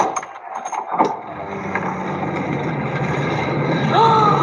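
Animated film soundtrack played back over a video call: two sharp knocks about a second apart, then a low steady drone. A voice starts at the very end.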